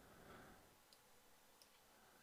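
Near silence with two faint computer mouse clicks, about a second in and again just after.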